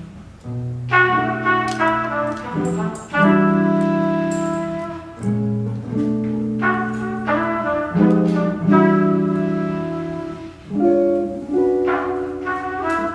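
Small jazz combo playing an instrumental passage: trumpet holding long melody notes over upright bass, electric guitar and light drums, each phrase swelling and then fading.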